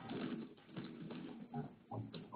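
Faint, scattered background noise coming in over just-unmuted conference-call phone lines: a low hum with small irregular sounds, and no one speaking.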